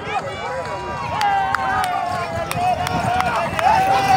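A long, loud call held on one pitch, a man's voice drawn out for several seconds, with a few sharp knocks scattered through it.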